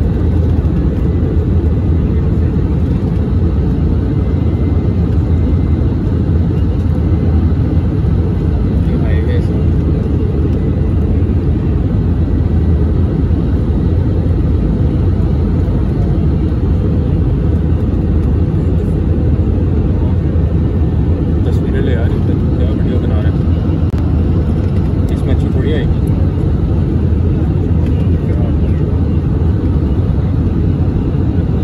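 Airbus A320 cabin noise on approach: a loud, steady low rumble of the engines and airflow over the fuselage, with a faint high whine in the first half.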